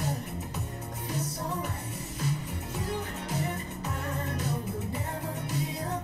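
Indonesian pop song playing: a singing voice over a steady bass line.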